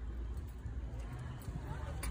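Low, uneven rumble of wind buffeting a phone's microphone, with faint voices in the background.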